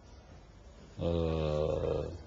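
A man's voice holding one drawn-out vowel for about a second, a hesitation filler in mid-sentence. It starts about a second in, after a second of low room tone.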